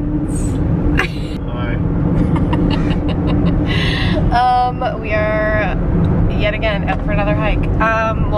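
Steady road and engine rumble inside a moving car's cabin, with a woman's voice and laughter over it in the second half.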